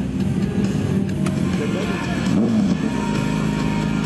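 A 1000 cc sport bike's engine running as it rides up the approach for a stoppie, heard over loud background music.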